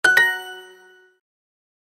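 Duolingo app's correct-answer chime: two quick bell-like dings, the second a little higher, ringing out and fading within about a second. It signals that the typed answer has been marked correct.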